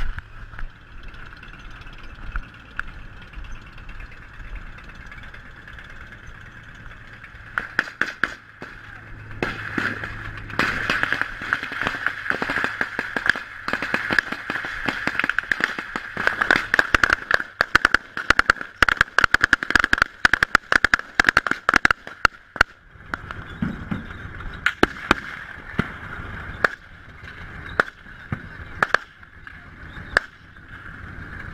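Gunfire in rapid bursts of sharp cracks. The shots start about eight seconds in, are densest through the middle and thin out near the end, over a steady high-pitched hum.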